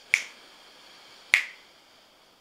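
Two sharp snap-like clicks about 1.2 seconds apart, part of an even pulse that keeps the breath count, with a faint steady hiss between them.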